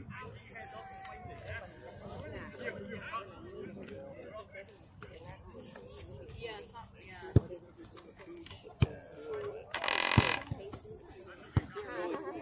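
Faint distant shouting and chatter of players and onlookers across a youth soccer field, with a few sharp knocks in the second half. About ten seconds in comes the loudest sound, a short shrill blast of the referee's whistle.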